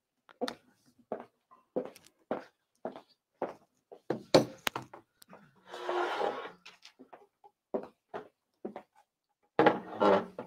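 Scattered light clicks, taps and knocks of a laptop being handled and typed on at a tabletop, with a short rustle about six seconds in.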